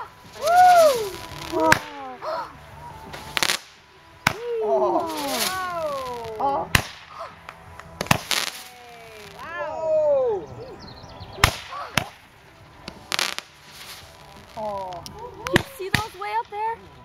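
Consumer aerial fireworks firing shots into the sky: several sharp bangs at irregular intervals, with hissing bursts as shots go up.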